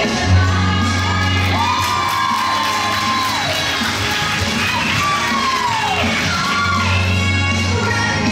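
Music playing, with a crowd cheering and whooping over it.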